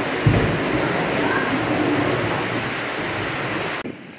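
Steady rushing outdoor noise with faint background voices and a single low thump about a quarter second in; the noise stops abruptly near the end.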